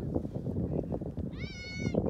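Wind buffeting the microphone, with one short, high-pitched call about one and a half seconds in that rises at its start and then holds level.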